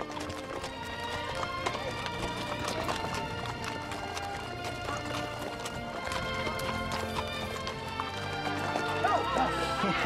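Background music over the hooves of several horses walking and trotting, a clip-clop of hoofbeats on a sandy, rocky trail.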